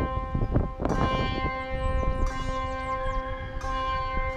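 Background music with held, ringing sitar-like string tones over a drone, with a low rumble underneath.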